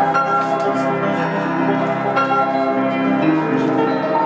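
Grand piano being played: full chords struck every second or so and left to ring, with a bright, bell-like upper register.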